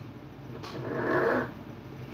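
A man's short, noisy breath out, like a heavy exhale or grunt, lasting about a second and starting just over half a second in.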